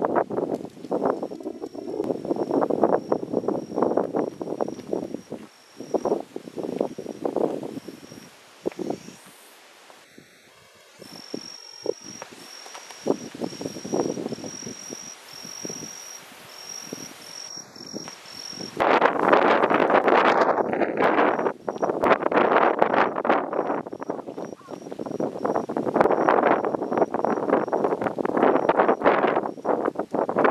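Gusty wind blowing on the microphone, coming and going in waves, dropping to a lull about a third of the way in and strongest in the last third. Over it an insect shrills on one high pitch, sometimes held for several seconds, sometimes in quick even pulses.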